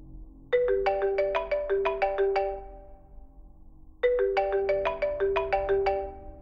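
Mobile phone ringtone: a short tune of quick notes, played twice about three and a half seconds apart.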